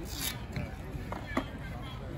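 Open practice-field ambience: wind rumbling on the microphone and faint distant voices, with a brief hiss near the start and two short knocks a little past a second in.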